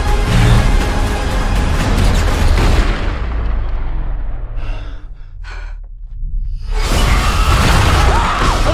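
Movie-trailer music and sound design: loud music with a heavy low rumble that turns muffled as its highs fade away, drops to a brief near pause with a few short sounds, then comes back loud and full about seven seconds in.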